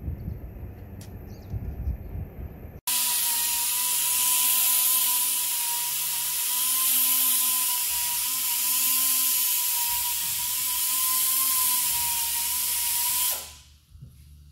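A motor running steadily, with a loud hiss and a steady whine. It starts suddenly about three seconds in and fades out shortly before the end.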